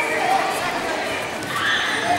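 Voices echoing in a large sports hall, with a high-pitched shout rising near the end.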